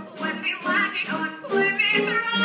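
Musical theatre number: a cast singing with orchestral accompaniment.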